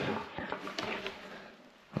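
A pause in a man's speech: the tail of his word, then a couple of faint light taps, and quiet room tone.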